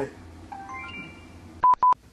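Censor bleep: two short steady beeps at about 1 kHz near the end, cutting off sharply, laid over a spoken word.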